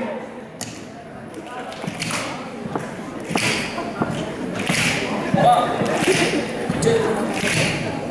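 Finger snaps, repeating at a slow steady beat of about one every second and a half, while an audience joins in snapping along. Voices murmur in the reverberant hall.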